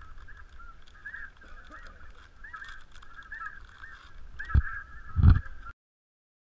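A flock of snow geese calling, many overlapping honks without a break. Two heavy thumps come near the end, just before the sound cuts off suddenly.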